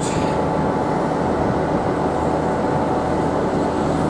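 Southern Class 377 Electrostar electric multiple unit pulling out of the platform, giving a steady, even running noise of wheels and traction equipment at low speed.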